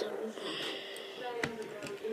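Small plastic Lego pieces being handled and pressed onto a model by hand, with two short clicks about a second and a half in.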